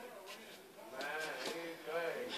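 A person's voice making drawn-out, wavering vocal sounds without clear words. It is quieter at first and louder from about a second in.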